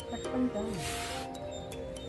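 Background music with steady held notes. A short voice-like sound with a falling pitch cuts in about half a second in.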